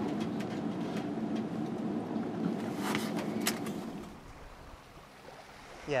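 Chevy-chassis Class C motorhome engine running, heard from inside the cab as a steady low hum, with a couple of short clicks about three seconds in. The hum dies away about four seconds in, leaving a quiet stretch.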